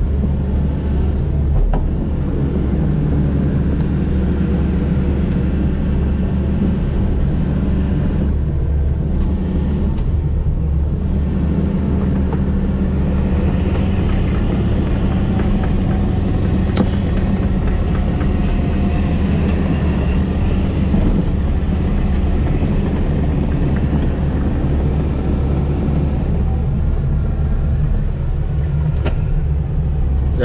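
Diesel engine of a Volvo EC220DL hydraulic excavator running steadily, heard from inside its cab; the engine note shifts slightly a few times.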